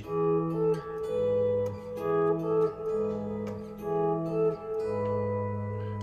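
Epiphone electric guitar played clean, fingerpicking a slow two-voice line: a bass note and a melody note sounded together and held for about half a second to a second before moving on, roughly eight changes in all.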